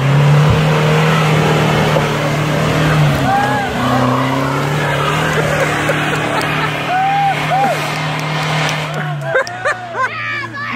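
A Jeep Cherokee's engine held at high revs as it drives up a muddy off-road track, tyres working through deep mud. A steady hard-working drone, with a shift in pitch about three seconds in, easing off shortly before the end.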